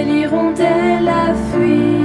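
Background music: a French song, a voice singing the end of a line over sustained instrumental accompaniment.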